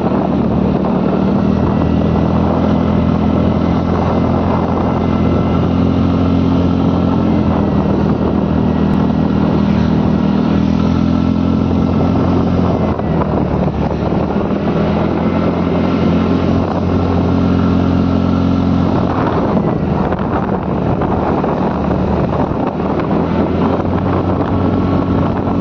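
A motor scooter's engine running at a steady cruising speed, with wind buffeting the microphone and road noise underneath. The engine note dips briefly about halfway through.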